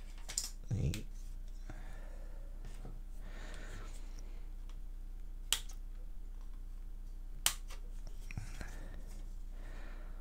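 Flush sprue cutters snipping plastic model-kit parts off their sprue: two sharp clicks, about halfway through and again two seconds later. Between them come soft rustling as the plastic sprue and paper instructions are handled, over a steady low hum.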